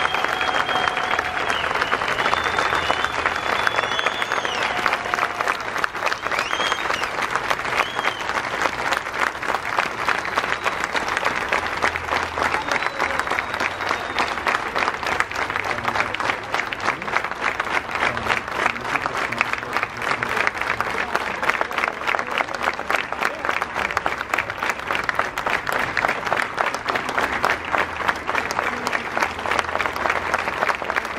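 A crowd applauding steadily, many hands clapping. A few shrill high calls ring out over the clapping in the first several seconds.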